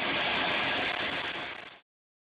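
A steady rushing noise with no clear tone that fades down and then cuts off to silence shortly before the end.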